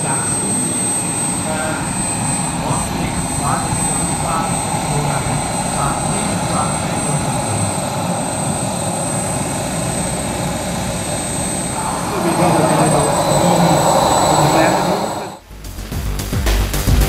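Turbine engine of a radio-controlled F-104S Starfighter model jet running at taxi power: a steady high whine over a rushing hiss. It grows louder about twelve seconds in, then cuts off abruptly near the end.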